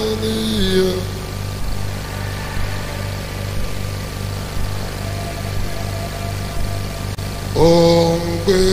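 Sustained low keyboard pad with an evenly pulsing bass under a live worship ministration. A held sung note slides down and ends about a second in, and singing comes back in near the end.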